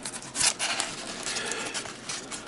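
Packing tape tearing and a styrofoam shipping box's lid scraping open: a run of small crackles and clicks, loudest about half a second in.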